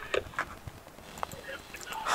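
A few faint, irregular clicks and ticks in a lull, with no clear steady source.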